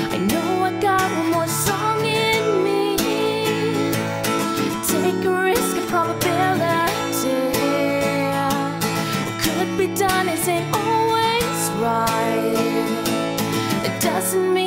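Acoustic guitar strummed in steady chords, with a woman singing along.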